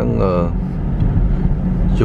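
Steady low rumble of a car's road and engine noise, heard from inside the cabin while it is driven slowly, with one short spoken word at the start.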